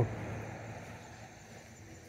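Faint outdoor ambience: a low rush of distant traffic that fades over the first second and then stays low and steady.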